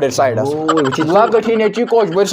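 A man's voice talking without pause, its pitch rising and falling in lively, exaggerated speech.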